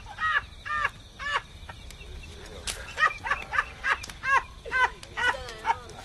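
An animal calling repeatedly: short pitched notes that rise and fall, several a second in uneven bursts, over a low steady rumble.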